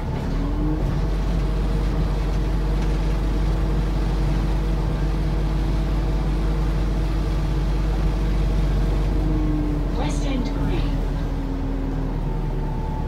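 Volvo B5LH hybrid double-decker bus running on the move, heard from inside the lower deck: a steady low rumble with steady whines over it, one whine rising briefly just after the start. About ten seconds in comes a short burst of higher sounds.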